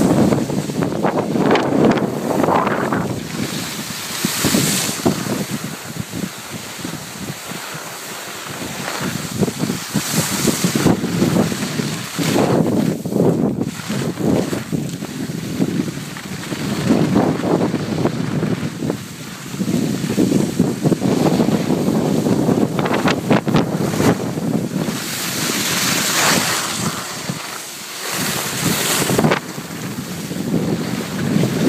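Wind buffeting a phone microphone while skiing downhill, swelling and easing every few seconds, mixed with the hiss of skis sliding over packed snow.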